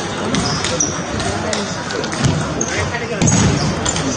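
Table tennis balls being struck by bats and bouncing on tables in quick, repeated clicks, with people talking in the hall behind.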